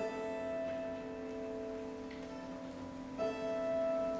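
Russian folk-instrument orchestra of domras, balalaikas and gusli playing soft held notes in a contemporary concert piece. A chord enters at the start and is struck again about three seconds in, over a steady low tone.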